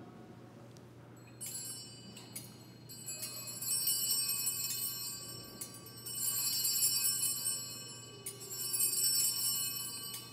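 Altar bells rung by an altar server at the elevation of the consecrated host, shaken in several bright, high-pitched bursts. The longest bursts last about two seconds each.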